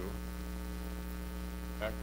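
Steady electrical mains hum, a low buzz made of several evenly spaced steady tones that never changes in level.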